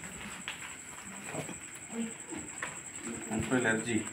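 Faint, low murmured talk from people off to the side, with a thin steady high-pitched whine underneath; the voices pick up near the end.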